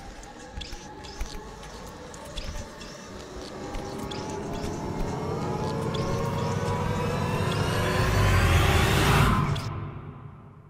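Subway train pulling out of a station, its motor whine rising in pitch and growing louder over a low rumble as it gathers speed, with scattered clicks; it cuts off sharply near the end.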